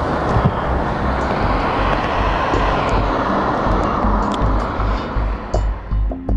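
Steady outdoor road noise, with background music carrying a low, even beat fading in underneath and taking over near the end.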